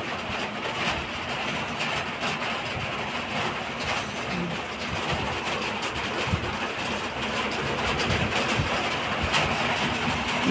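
Steady hiss of heavy rain falling on the roof, an even wash of noise with scattered faint ticks.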